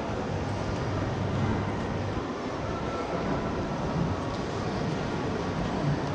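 Steady, even rumble of shopping-mall ambience, with no distinct events standing out.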